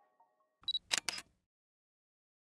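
Outro music fades out. Then comes a camera-shutter sound effect: a short high beep followed by two sharp clicks in quick succession.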